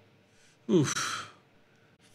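A man's short, breathy "oof", an exhaled exclamation falling in pitch, about two-thirds of a second in.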